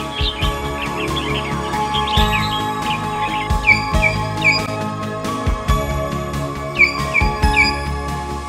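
Common hill myna calling: scattered chirps in the first couple of seconds, then two runs of three quick falling whistles about three seconds apart. The calls sit over steady background music.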